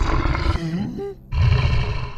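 A cartoon character's angry, growling roar, in two pushes: a rough, wavering cry for about a second, then, after a brief dip, a louder, deeper burst.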